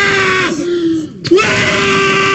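A person screaming: a long, loud scream held on one steady pitch. It breaks off briefly about a second in, then starts again and is held.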